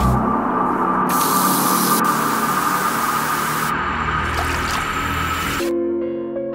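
Intro music: a dense hiss-like noise layer with a held tone, which cuts off just before the end and gives way to sustained keyboard notes.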